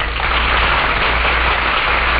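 Studio audience applauding steadily, a dense wash of clapping that starts as the music cuts off, over a low steady hum from the old radio recording.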